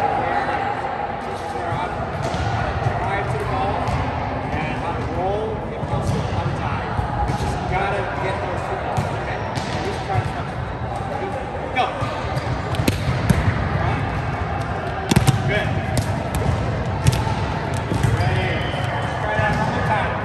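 Volleyballs being hit and bouncing on a sports-court floor in a large, echoing gym: a string of sharp smacks, several close together in the second half, over a steady background of voices.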